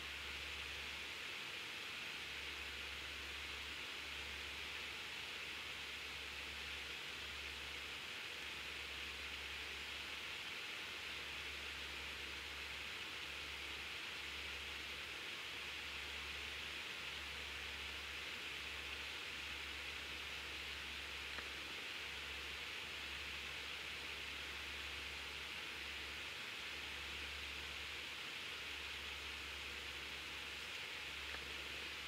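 Steady faint hiss of room tone, with a low hum underneath that keeps breaking off for moments.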